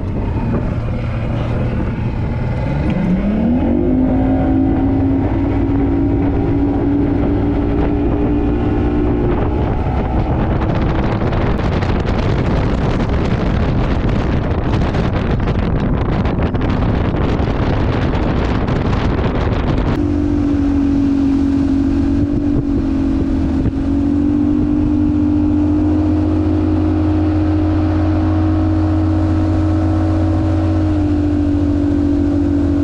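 Bass boat's outboard motor throttling up, its pitch climbing over a second or two, then running steady at cruising speed. A loud rushing noise covers it for several seconds partway through.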